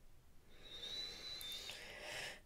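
A woman's long in-breath, starting about half a second in, with a faint high whistle running through it.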